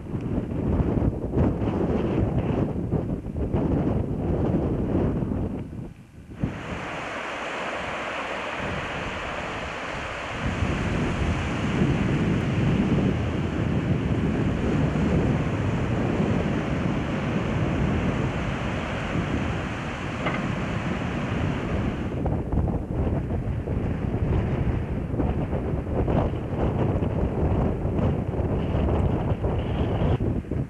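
Wind buffeting a camcorder microphone outdoors, a gusty rumbling. At about six seconds it changes abruptly, at a cut, to a steadier, brighter rushing noise that lasts until about twenty-two seconds, when the gusty rumbling comes back.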